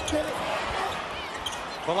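Arena crowd noise and on-court sounds of a live college basketball game, with players scrambling under the basket for a rebound after a missed three-point shot.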